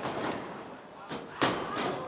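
A wrestler's blow or body landing in the ring: a sharp thud about a second and a half in, the loudest sound here, with a smaller knock just before it.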